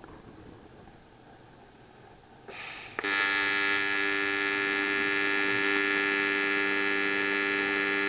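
AC square-wave TIG arc on aluminium, set to 70% negative / 30% positive balance, with the 30% positive side giving the oxide-cleaning action. After a short hiss, the arc strikes about three seconds in and holds a loud, steady buzz.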